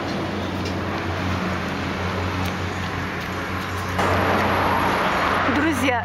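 Steady outdoor background noise with a low hum, typical of road traffic; it steps up louder and hissier about four seconds in. A woman's voice starts right at the end.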